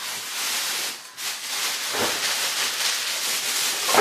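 A shopping bag being handled, giving a continuous crinkling rustle that dips briefly about a second in.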